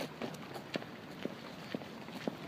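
Footsteps of people walking on a paved path, about two steps a second.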